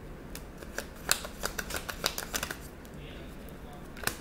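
Tarot cards being shuffled and handled: a quick run of sharp paper snaps and flicks through the first two-thirds, then a quieter stretch and one more snap at the end.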